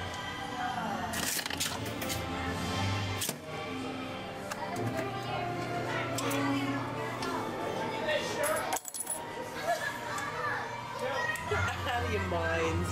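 Souvenir penny press machine at work: a few short metallic clinks and clunks of coins going in and coming out, over steady background music.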